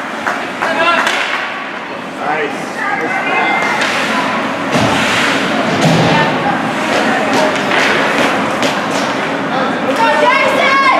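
Ice hockey game in a rink: voices of spectators and players shouting and chattering, with scattered sharp thuds of sticks and puck striking the ice and boards.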